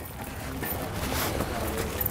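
Soft clinking and rustling of steel square-link snow chains being handled and draped over a car tire.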